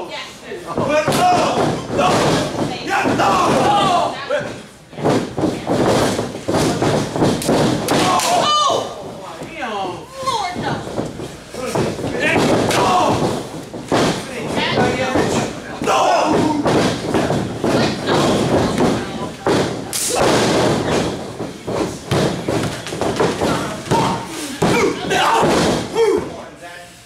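Wrestlers' bodies hitting a wrestling ring's mat, heard as repeated thuds and slams among shouting voices.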